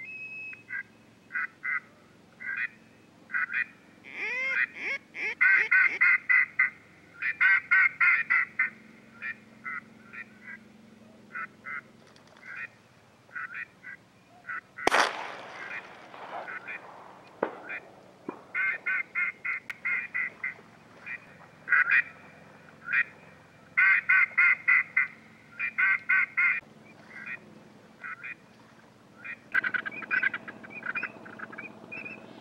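Ducks quacking in quick runs of calls, again and again, with one sharp crack about halfway through.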